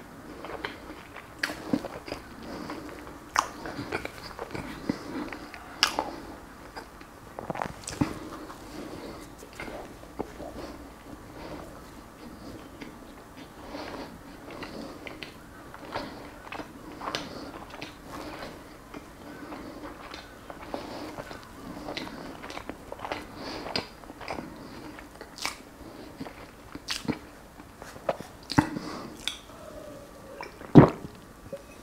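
Close-miked chewing and mouth sounds of a person eating: irregular wet smacks and clicks, some louder than others.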